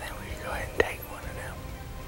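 A man whispering a short remark, with a single sharp click just under a second in.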